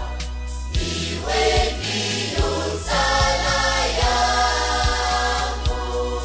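Choir singing a Swahili song over a steady beat with a low bass line.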